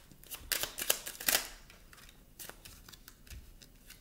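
Tarot cards being handled and shuffled off-table: a quick run of sharp flicks and riffles in the first second and a half, then a few fainter clicks.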